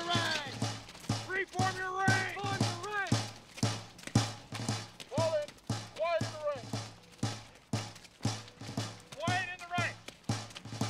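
A military field drum beating a steady, slow cadence of single strokes, about two to three a second. Indistinct voices rise and fall over it now and then.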